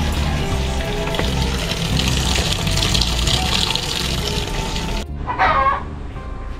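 Water pouring steadily into the drum of a top-load washing machine as it fills, under background music. Near the end the filling gives way to a brief, louder sound.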